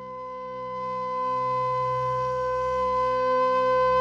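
Relaxing flute music: a flute holds one long note that swells steadily louder, over a low sustained drone.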